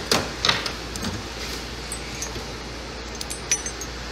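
Machined steel plates clinking against each other as they are picked through in a tool drawer: a few sharp clicks near the start, then lighter clinks with a brief metallic ring later on.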